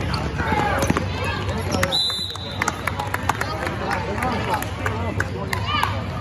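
Basketball being dribbled on a hardwood gym floor amid players' and spectators' voices, with a short referee's whistle blast about two seconds in.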